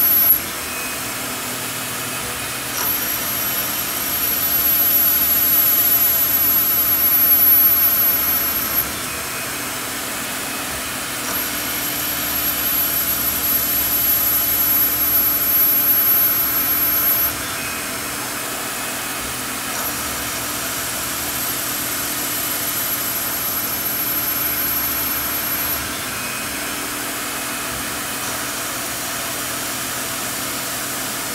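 Tormach CNC lathe turning 1018 steel with a Kennametal carbide insert, a steady machining sound. Three times it swells louder with a thin high whine for about six seconds: about three, eleven and twenty seconds in.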